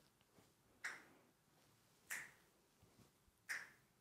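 A person breathing out in short, soft puffs, three times about a second and a quarter apart, in time with rhythmic arm movements during exercise.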